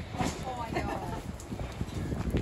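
Indistinct voices of people talking, with footsteps and short knocks on wet pavement as the person filming walks past.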